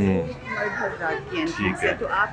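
Background voices of people talking, with children's high-pitched voices among them.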